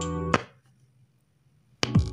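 Music played from a phone through a TDA7388 amplifier board and loudspeaker under test. It cuts off abruptly about half a second in and comes back just before the end.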